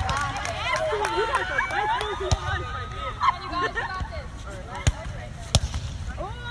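Several people's voices talking and calling over one another, with three sharp slaps spread through, typical of a volleyball being hit in play.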